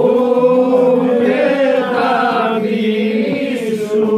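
A group of men singing unaccompanied, with a low drone held steady under a moving upper voice line.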